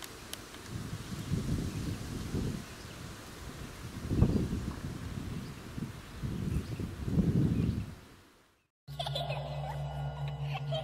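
Wind buffeting the microphone outdoors: a low rumble that swells in gusts three or four times. Near the end it fades out and background music begins.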